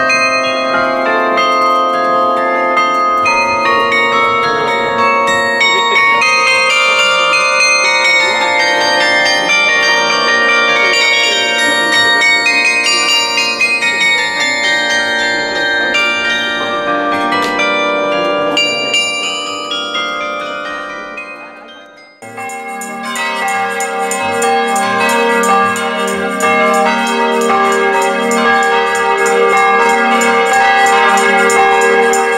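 Carillon bells played from a baton keyboard, a melody of many overlapping ringing notes that dies away about 22 seconds in. Then another, denser and brighter run of bell notes starts abruptly.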